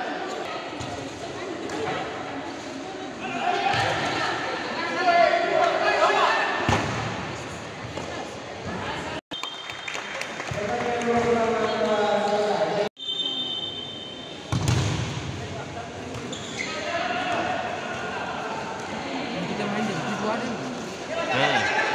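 Spectators shouting and calling out in an echoing sports hall, with thuds of a futsal ball being kicked and bouncing on the hard court. The sound cuts out briefly twice in the middle.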